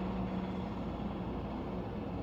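Steady low background rumble and hum with no distinct events: room noise between remarks.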